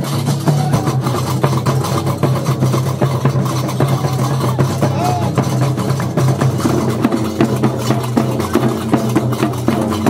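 Amazigh Ajmak folk troupe playing: double-headed drums beaten with curved sticks and hand-held iron castanets (qraqeb) clattering in a fast, steady rhythm, over a continuous low sustained tone.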